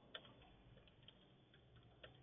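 A few faint, scattered keystrokes on a computer keyboard over a quiet background.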